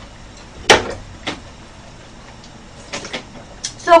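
A few short, sharp clicks of chopsticks knocking against dishes: the loudest just under a second in, a softer one shortly after, and a small cluster about three seconds in.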